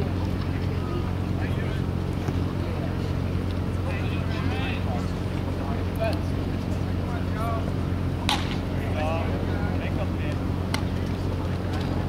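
Open-air ballpark ambience: a steady low hum under faint, distant voices. About eight seconds in, a single sharp pop fits a pitched baseball smacking into the catcher's leather mitt. A second, fainter click follows a couple of seconds later.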